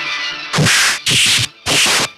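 Dubbed fight-scene punch sound effects: three loud swishing hits in quick succession, about half a second apart, over background music.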